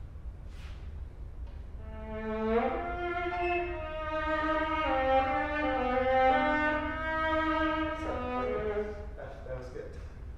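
Solo viola bowed in a short singing phrase of several connected, sustained notes, starting about two seconds in and ending about a second before the end.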